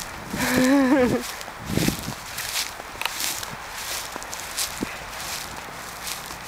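Footsteps through pasture grass, uneven and soft, with a few light knocks. A woman's brief voiced 'oh' or laugh about half a second in.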